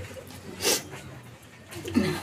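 A crying woman's single sharp sniff, a short breathy burst less than a second in, amid quiet breathing between her sobbing words.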